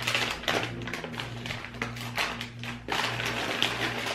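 A popcorn snack bag being handled and opened, its crinkling making a run of irregular sharp crackles over a low steady hum.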